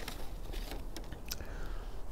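A few faint mouth clicks from a man tasting cigar smoke, over quiet outdoor background hiss.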